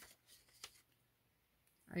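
Paper pages of a colouring book being turned by hand: a faint rustle with one light flap in the first second.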